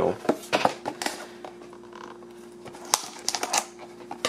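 Shrink-wrapped cardboard trading-card hanger box being handled, its plastic wrap crinkling with scattered clicks, busier in the second half with a sharp click about three seconds in, over a faint steady hum.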